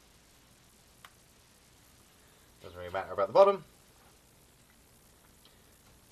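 A man's voice: one short mumbled utterance lasting about a second, midway through. Otherwise there is only quiet room tone, with a single small click about a second in.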